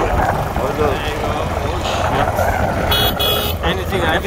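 Low, steady engine rumble of a road vehicle under voices, with a short high-pitched horn beep in two parts about three seconds in.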